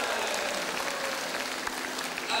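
Audience applauding: a steady patter of many hand claps.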